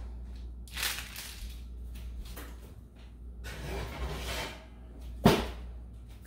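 Kitchen handling noise as a baking sheet of cookies goes into the oven: a few soft scrapes and rustles, then a single sharp bang about five seconds in as the oven door is shut.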